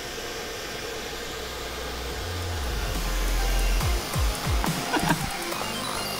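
Handheld hair dryer blowing steadily, its nozzle fitted with the cut-off top of a plastic water bottle, a steady rushing hiss that grows a little louder a few seconds in.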